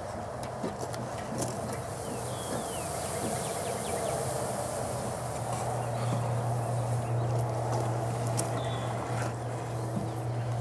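Honeybees humming in an open top-bar hive, a steady low hum that grows stronger about halfway through.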